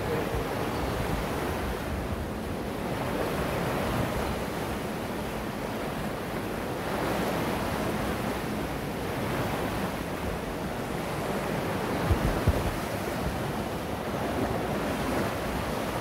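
Swollen river running high and fast after three days of persistent rain: a steady rush of flowing water, with wind on the microphone. A few low thumps about twelve seconds in.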